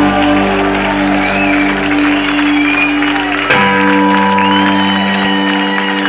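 Live rock band with electric guitars holding long sustained chords, shifting to a new held chord about halfway through, as the song winds down. A crowd cheers and applauds over the music.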